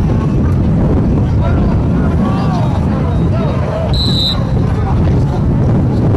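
Wind rumbling on the microphone over distant shouting voices of players and spectators at a football field, with a short, high referee's whistle blast about four seconds in.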